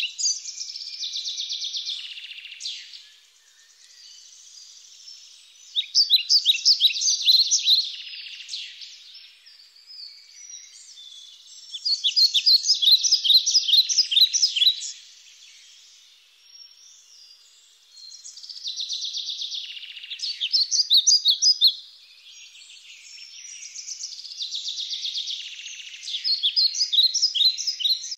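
Songbirds chirping and singing: bursts of rapid, high, repeated chirps come back every six or seven seconds, with quieter twittering in between.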